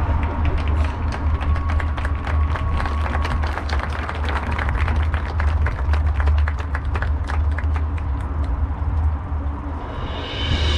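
Scattered applause and clapping from the stands, densest in the middle and thinning out near the end, over a steady low rumble.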